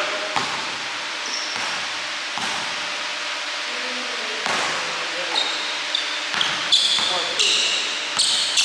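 A basketball bouncing on a hardwood gym floor: a few scattered bounces, then quickening dribbles over the last few seconds. Sneakers squeak on the floor during the footwork.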